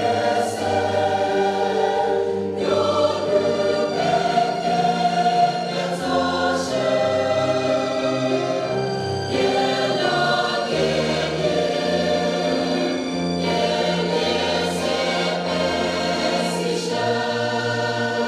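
Large mixed choir of women and men singing in parts, with sustained chords that change every second or two.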